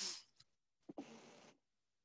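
Near silence on a computer-audio recording: a short breathy hiss at the start, then a faint click about a second in followed by half a second of soft hiss.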